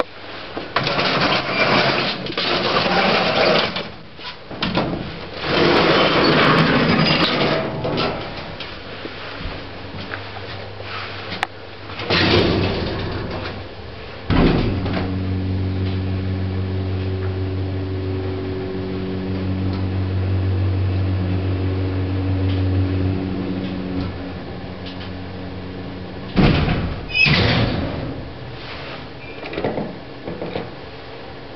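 Vintage 1940s passenger lift, modernised by Furse in the 1970s, in use: doors sliding and rattling, then about halfway a knock as the car sets off. A steady low motor hum with a few faint tones runs for about ten seconds while it travels, then dies away. Near the end the doors slide again.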